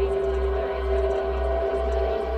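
Droning "frequency" track of steady held tones, with a deep low hum that pulses about twice a second underneath.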